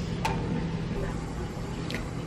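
Steady low background hum, with a short click soon after the start and another near the end.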